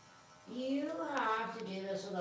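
A woman's voice, speaking in a drawn-out, sing-song tone, begins about half a second in after a moment of quiet.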